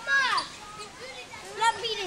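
Young visitors' voices: an excited call falling in pitch just after the start, then another brief burst of excited calling near the end.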